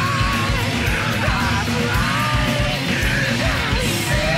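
Loud punk rock song with yelled vocals over dense, driving drums.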